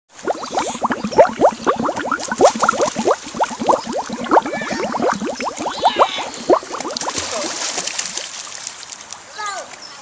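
Many children's voices shouting and squealing at once in a swimming pool, dense for the first several seconds and thinning out near the end.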